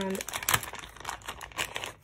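Thin clear plastic bag crinkling and crackling as a wax melt is handled and pulled out of it, with a sharper crackle about half a second in.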